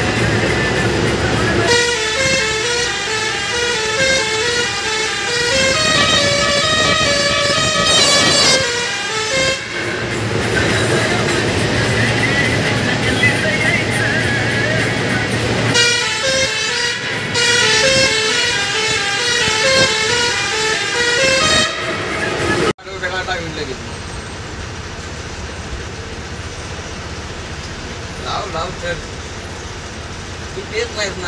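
An Indian bus's musical 'changing' horn playing a repeating multi-note tune in two long runs of several seconds each, over the bus's engine and road noise. Near the end the tune stops and the sound drops abruptly to a quieter engine rumble.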